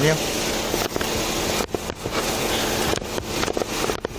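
Steady rustling and crackling noise on a body-worn police camera's microphone, with a few sharp clicks and faint muffled voices.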